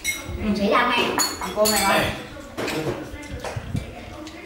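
Eating utensils (chopsticks and spoons) clinking against bowls as people eat, with a few sharp clinks through the middle.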